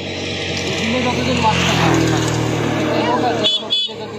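A motor vehicle's engine hum building up and passing, then two short horn beeps near the end.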